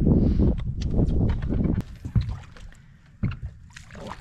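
Wind rumble on the microphone and knocks of handling on a small boat for the first two seconds. Then a quieter stretch with a few sharp clicks and small water splashes toward the end, as a fish thrashes at the surface beside the boat.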